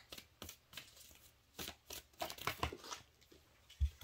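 A deck of oracle cards being shuffled by hand: soft, irregular flicks and rustles of card stock, with a dull thump near the end.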